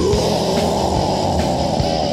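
Death/gothic metal from a 1999 cassette demo recording: a held, noisy band of distorted sound that slowly sinks in pitch toward the end, over bass and drums.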